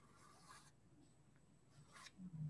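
Very faint scratching of a dark soft pastel stick stroked across pastel paper, in two short strokes: one at the start and one near the end.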